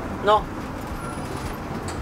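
Cab noise of a Mercedes-Benz van driving slowly: engine and tyres making a steady low drone inside the cab.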